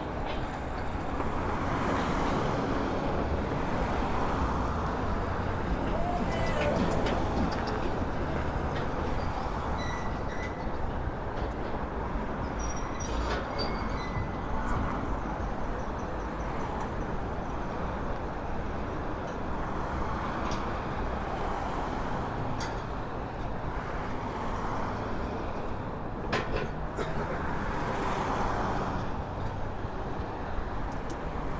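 Road traffic on a busy multi-lane street: a steady rumble of engines and tyres that swells a few times as vehicles pass close by.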